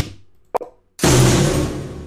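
Radio-production hit sound effects ('golpes') auditioned one after another: a very short sharp hit about half a second in, then a louder hit about a second in that dies away over a second or so.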